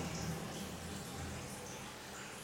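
Quiet room tone in a small room: a faint, steady hiss with a low hum underneath.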